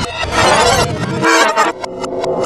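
Effects-processed cartoon soundtrack: layered, warped pitched tones, turning choppy and stuttering near the end.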